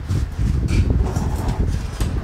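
Wind buffeting on the microphone from a fan blowing across it, a rough low rumble, with a few light knocks and rustles of movement.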